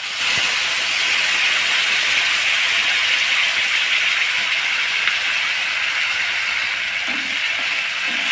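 Wet banana-peel paste sizzling in hot oil in a nonstick frying pan, a loud, steady hiss that eases a little over the seconds as the paste starts to fry.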